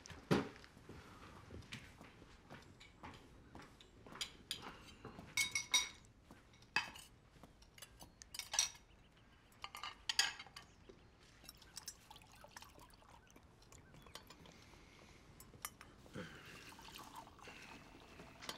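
Ceramic dishes and cutlery clinking and clattering as plates and bowls are handled and stacked, with a few sharp clinks that ring briefly, and a soft knock about half a second in.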